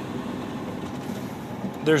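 Steady cab noise of an International TranStar tractor under way: the hum of its Cummins Westport ISL G natural-gas engine mixed with road noise, heard from inside the cab. A man's voice starts near the end.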